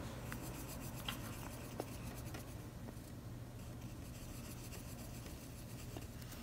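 Pencil scratching faintly on sketchbook paper as small strokes are drawn, with a few light ticks in the first two seconds.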